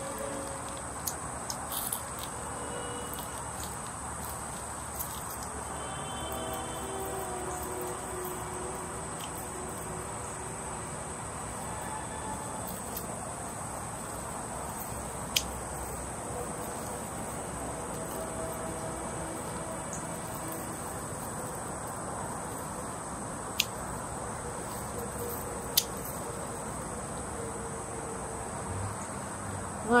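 Insects trilling steadily in a high, unbroken drone, with a few sharp clicks standing out above it.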